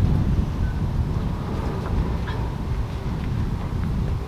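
Wind buffeting the microphone: a steady low rumble with no clear events on top.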